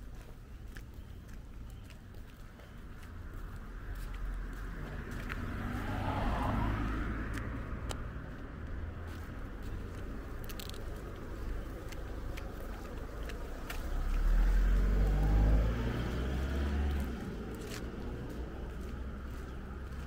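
Cars passing on a town street. One swells and fades about six seconds in, and a second passes louder and closer with a low engine sound about fourteen to sixteen seconds in. Light footsteps click on paving throughout.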